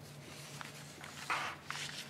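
Paper rustling as pages are handled, in one short burst a little past halfway, with a few light clicks and a steady low hum from the room.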